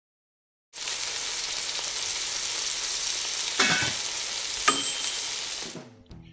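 Steady sizzling hiss, as of food frying in a pan. It starts a moment in and stops suddenly just before the interview begins, with a scrape about three and a half seconds in and a light ringing clink about a second later.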